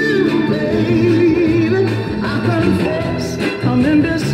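A northern soul record playing from a vinyl single on a turntable: a soul song with a singer's voice over the band.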